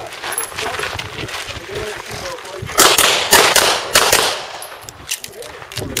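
A handgun fired in a quick string of about half a dozen shots, starting about three seconds in, as the shooter engages steel targets after drawing from the holster.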